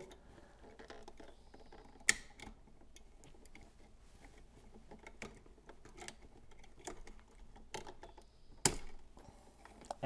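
Light, scattered clicks and taps of a wall switch and its copper wires being handled as the wires are unhooked from the switch's screw terminals, with two sharper clicks, about two seconds in and near the end.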